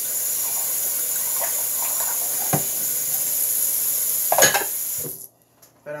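Kitchen tap running steadily into the sink while dishes are washed, with a light knock and then a louder clatter of dishware, before the water is shut off suddenly about five seconds in.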